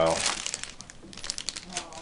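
Clear plastic bags of quadcopter propellers crinkling in the hand as they are moved about: a quick run of small crackles.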